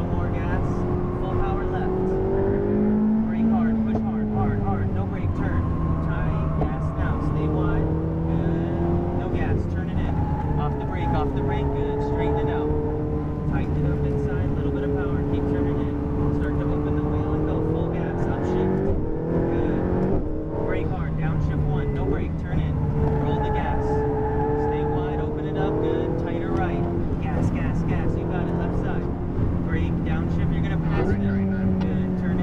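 Ferrari sports car engine heard from inside the cabin while lapping a race track, its note falling and rising again several times as the car slows for corners and accelerates out.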